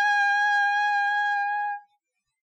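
A single high note on a trumpet-like brass tone, held steady and cut off just before the end: the final sustained note of a short rising intro jingle.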